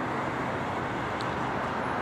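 Steady road traffic noise, an even hiss with no distinct events.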